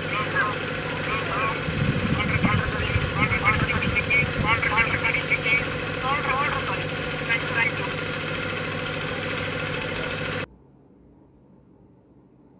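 A recorded phone call played back through a Vivo Y91i smartphone's loudspeaker: voices over a steady hum, stopping suddenly about ten seconds in when the recording ends.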